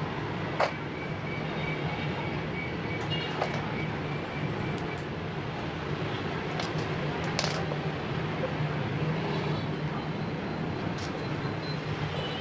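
Small plastic Lego bricks clicking and tapping as they are handled and pressed together, a few separate sharp clicks, the loudest about half a second in, over a steady low background hum.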